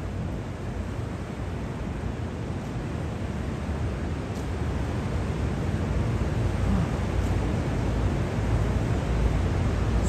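Steady city background noise: a low rumble with a hiss over it, growing slightly louder toward the end.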